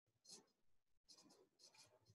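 Near silence: quiet room tone with a few very faint, brief soft sounds.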